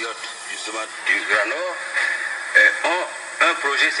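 Speech from an old recorded television debate, played back through a phone's speaker, with a steady hiss underneath.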